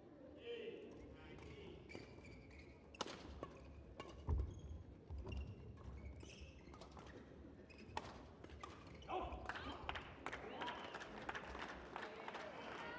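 Badminton rally in a sports hall: irregular sharp cracks of rackets striking the shuttlecock and the knocks of players' footsteps on the court, with brief voices, a little louder near the end.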